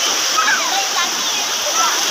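Steady wash of sea surf on a beach, with faint distant voices over it.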